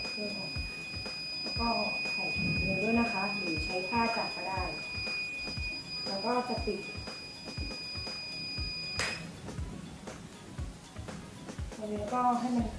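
Mug heat press timer alarm sounding one steady high-pitched tone, the signal that the set pressing time is up. It cuts off with a click about nine seconds in.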